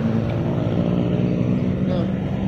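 Street traffic: a nearby vehicle engine running steadily with a low hum.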